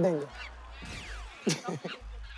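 A short falling whistle-like glide, then a quick burst of goose-like honks about a second and a half in: a comic sound effect.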